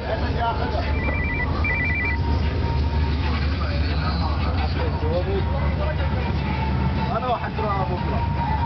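A car's engine running as the car slides round in circles on snow, under people's voices. A two-tone electronic trill, like a phone ringing, sounds twice about a second in.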